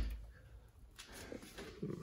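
The low thump of a tool-chest drawer shutting dies away at the start. Then it is mostly quiet, with faint handling noise and a faint murmured voice in the second half.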